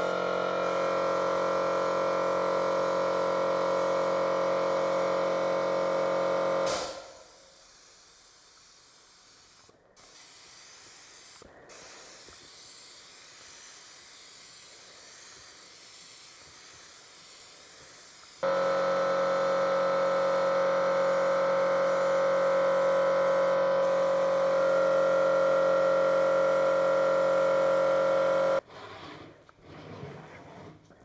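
Compressed-air spray gun hissing steadily as it sprays thinned cap plastic (Baldiez-type vinyl in acetone) over silicone moulds. A loud, steady motor hum from the air supply runs with it for the first seven seconds or so. The hum then cuts out and the hiss goes on alone, breaking off briefly twice. The hum starts again about halfway through and stops abruptly near the end.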